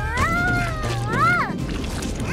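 High-pitched, squeaky cartoon voice crying out wordlessly: one long wavering cry, then a shorter cry that swoops up and back down.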